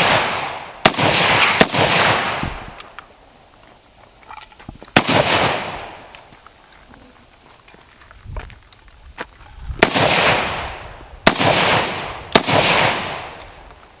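Saiga semi-automatic rifle in 7.62x39 firing six single shots at uneven intervals: two close together about a second in, one about five seconds in, and three spaced about a second apart near the end. Each shot is followed by a long echo that fades over a second or two.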